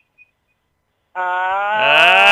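About a second of silence, then a person's long drawn-out "aaah", held steady on one vowel with the pitch slowly rising.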